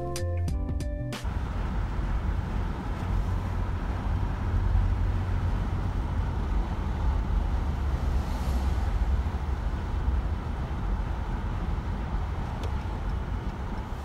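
Intro music stops about a second in, giving way to the steady low rumble of a moving vehicle's road and engine noise.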